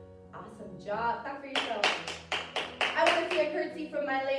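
A quick run of hand claps, about four or five a second for some two seconds in the middle, over background music with voices.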